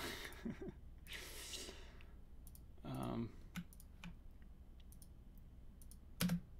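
A short laugh and an exhale near the start, then scattered faint clicks at a computer, with a brief vocal sound about three seconds in.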